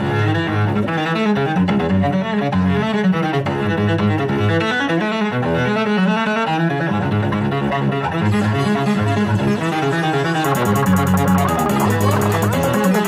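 Bowed cello playing a busy, repeating pattern of low notes in a mixed contemporary piece, layered with several overlapping parts. Near the end a fast, even, high ticking joins the texture.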